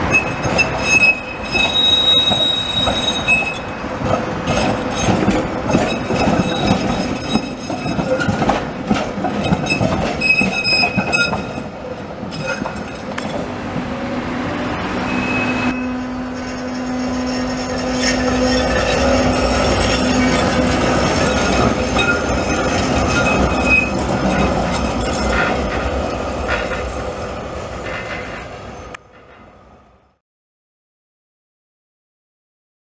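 Düwag TW6000 articulated tram running on street track, the wheels rumbling over the rails with short high-pitched wheel squeals several times as it takes curves. A steady lower hum joins in midway, and the sound fades just before the end.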